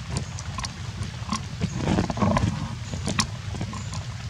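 A macaque's low grunting call, loudest about two seconds in, over a steady low background noise with scattered sharp ticks.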